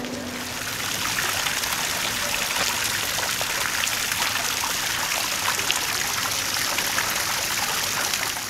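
Garden fountain's thin water jets splashing and trickling into a stone basin, a steady splashing that grows louder about a second in.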